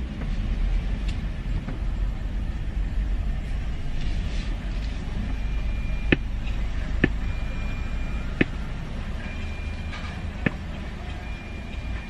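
Honda car engine idling, heard from inside the cabin as a steady low rumble. From about halfway in, four short high-pitched beeps and four sharp clicks alternate.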